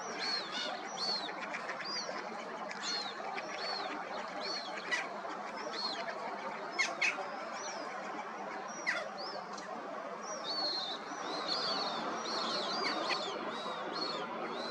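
Young black-necked grebes giving high, thin begging peeps: short rising-and-falling notes repeated about twice a second, more voices overlapping in the last few seconds. There are a few sharp clicks in the middle, over steady background noise.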